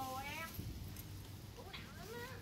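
A faint high-pitched voice with gliding pitch, heard at the start and again near the end, over a low background hum.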